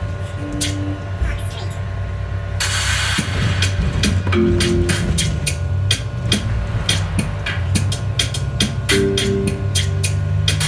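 Hip hop music with a steady beat.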